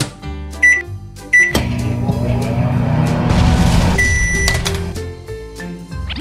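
Toy microwave oven's electronic sounds: two short beeps, then a steady running hum for about two and a half seconds, ending in a longer beep that signals the cycle is done.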